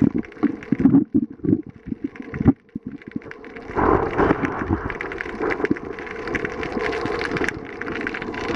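Underwater camera audio: muffled, uneven rumbling and knocking of water moving against the camera housing. It nearly cuts out about two and a half seconds in, then returns as a denser rushing noise with scattered sharp clicks.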